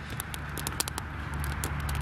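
Wood campfire crackling: quick, irregular snaps and pops over a low steady rumble.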